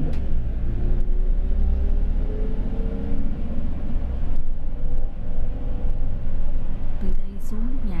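Inside a moving city bus: steady engine and road rumble, with a drivetrain whine that rises in pitch over the first few seconds as the bus picks up speed.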